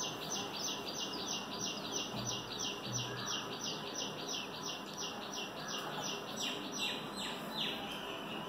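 A bird calling with a long run of short, falling chirps, about three a second, spacing out near the end.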